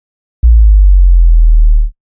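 A loud, deep synthesized bass hit for an animated logo reveal: a sharp attack about half a second in, then a steady low tone held for about a second and a half before it cuts off abruptly.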